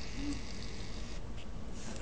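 A hand scraping and squishing through wet pumpkin pulp and seeds inside the pumpkin, a rustling scrape that stops after about a second.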